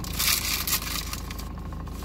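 Paper napkin rustling and crumpling in the hands, loudest in the first second, over a steady low hum.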